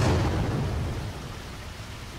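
A thunderclap that breaks in suddenly and rumbles away, fading over about two seconds.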